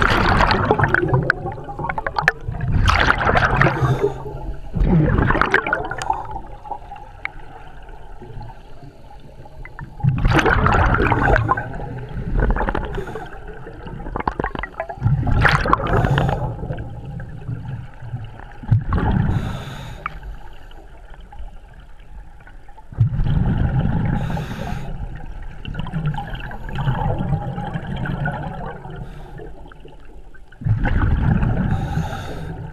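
Scuba regulator breathing heard underwater: exhaled bubbles burst out with a gurgle in loud spells every few seconds, with quieter stretches between.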